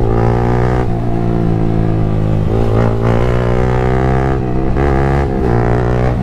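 Yamaha motorcycle engine running loud through an aftermarket exhaust while riding, its note climbing and dropping back several times as the revs change.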